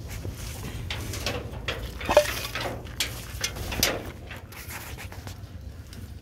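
Scuffing and rustling on gravelly ground as young puppies are handled and moved about, with a few short, sharper sounds between about two and four seconds in.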